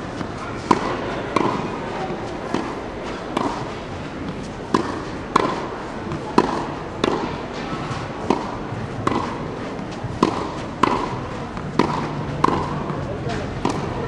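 Tennis rally on a clay court: ball struck by rackets and bouncing, a sharp impact every half second to a second, often in close pairs of strike and bounce.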